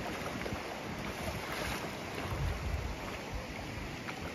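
Wind buffeting the microphone over the wash of the sea, with feet splashing through shallow water. A brief, brighter splash comes about one and a half seconds in.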